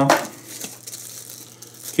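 Plastic accessory bags crinkling and rustling quietly as they are handled, with a few light clicks.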